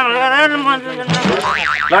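Comic sound effect: a wavering pitched sound that bends up and down, ending in a fast up-and-down wobble in pitch in the last half second.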